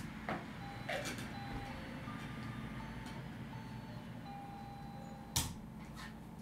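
A few sharp clicks and knocks, like small objects being handled and set down, the loudest about five seconds in. A faint, simple tune of single high notes plays underneath.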